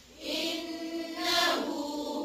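Quranic recitation in Arabic, chanted melodically with long drawn-out vowels; it resumes after a brief pause at the very start.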